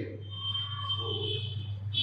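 Room tone: a steady low hum with a faint, steady high-pitched whine above it.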